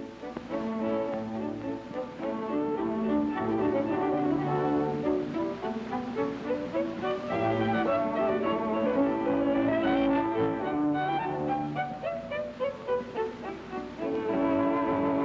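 Orchestral background music led by bowed strings, a melody moving in steps over held lower notes.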